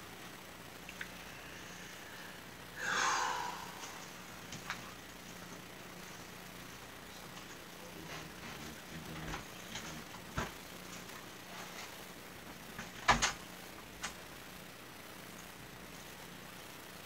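Household handling noises in a small room: a short scraping rustle about three seconds in, then scattered knocks and thuds, the loudest near the end, over a faint steady hum.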